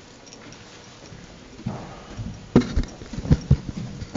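Quiet room tone, then from about halfway a run of irregular knocks and thumps close to the podium microphone as it and the papers at it are handled.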